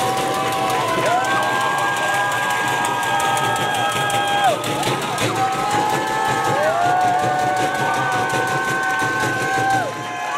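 Audience cheering and whooping after a poem ends. Several voices hold long high "woo" calls that overlap, each sweeping up, holding, then falling away.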